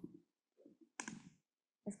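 Near silence with room tone, broken by one short click about a second in.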